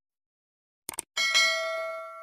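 A sound effect for an animated subscribe button: two quick clicks about a second in, then a bright, bell-like notification ding that rings on and fades away.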